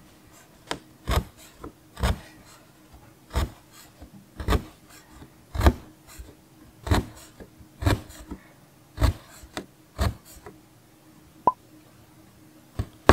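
Punch needle pushing yarn through fabric held tight on a gripper strip frame, stitch by stitch: a short scratchy pop at each punch, about one a second.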